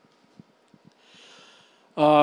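A person drawing a soft breath in close to the microphone, lasting about a second and starting about a second in, after a few faint clicks.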